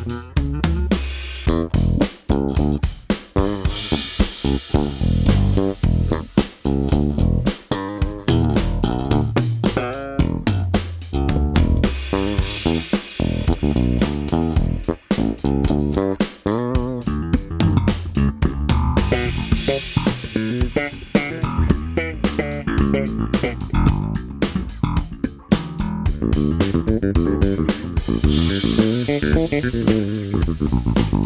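Electric bass guitars played in a busy run of quick plucked notes, passing from a Fender Jazz Bass to a Music Man StingRay and then to a G&L bass.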